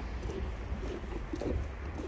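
A dove cooing in a series of short, low calls, over a steady low rumble of wind on the microphone.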